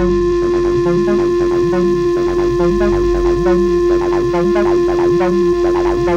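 Acid techno track: a sustained steady drone over an electronic figure that repeats about once a second.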